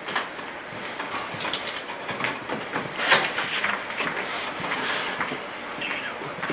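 Rustling handling noise with scattered soft clacks and knocks, a few of them louder about three seconds in.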